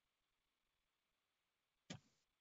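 Near silence over a video-call line, broken near the end by one short sound, such as a click.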